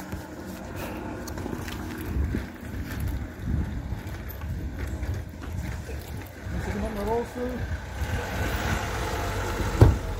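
Uneven low outdoor rumble, with a person's voice heard briefly in the background about seven seconds in.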